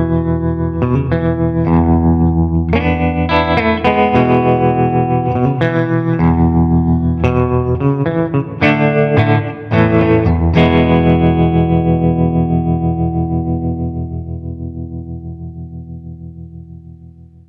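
Sunburst Les Paul-style electric guitar played through an Artesound Vibrosound hand-wired 30 W amp with 5881 power tubes, into a 1x12 closed cabinet with a Jensen Raptor speaker: chords strummed, the volume pulsing about five times a second from the amp's tremolo. About ten and a half seconds in, a last chord is struck and rings out, fading while it keeps pulsing.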